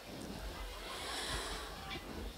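A singer breathing into a close handheld microphone: one long, airy breath that swells for about a second in the middle, over a low stage hum.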